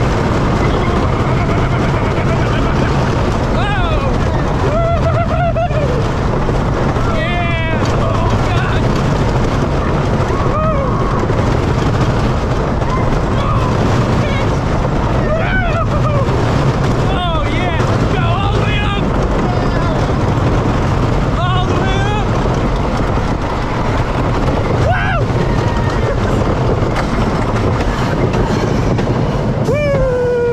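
Boulder Dash wooden roller coaster train running fast along its wooden track: a loud steady rumble and clatter of the wheels. Short yells from the riders break through several times.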